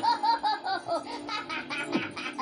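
Cartoon character laughing in a quick run of repeated 'ha-ha' bursts, about five a second, over background music with a held note, heard from a TV's speaker.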